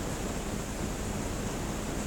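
Steady background hiss of room tone, with no distinct sound events.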